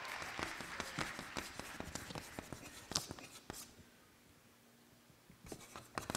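Faint room noise with scattered small clicks and rustles, dying down to near silence about four seconds in, with more clicks returning near the end.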